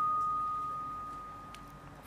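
A single steady high-pitched tone, fading slowly over about two seconds.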